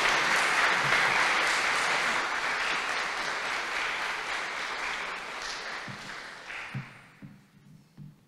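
Audience applauding, holding steady for about five seconds and then dying away over the last few seconds.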